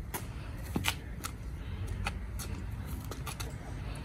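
A dog pawing and scratching at dry, gravelly dirt while hunting a beetle: irregular light scratches and ticks of claws on soil and small stones.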